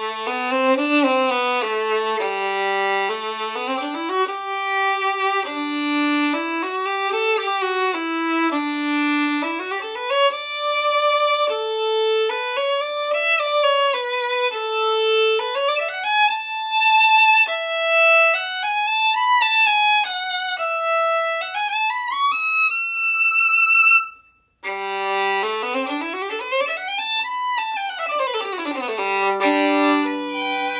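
Holstein Workshop "Il Cannone" violin strung with Thomastik PI strings, played solo with the bow: a melody of held notes that climbs from the low G string up to high notes. It breaks off sharply near the end, then resumes with a fast run up to a high note and back down.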